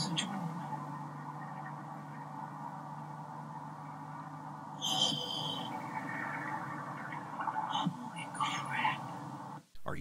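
Steady low hum and hiss of a phone recording, with faint voices talking now and then and a brief high tone about five seconds in; the sound cuts out abruptly just before the end.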